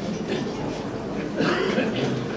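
Indistinct murmur of voices in a room, with a louder stretch about a second and a half in.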